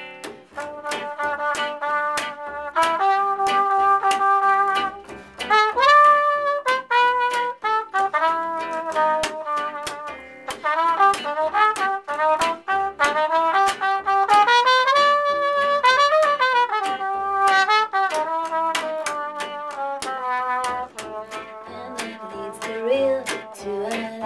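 Trumpet playing an instrumental solo of held notes and a few bent notes, with one hand working at the bell. Behind it, a plucked upright double bass and a rhythm section keep a steady swing beat.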